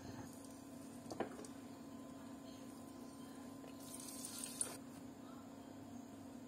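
Faint, low, steady hum, with a light knock about a second in and a brief hiss from about four seconds that ends in a click, as a frying pan is used on the hob.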